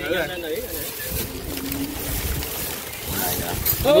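Wind rumbling on the microphone, with faint voices talking in the background.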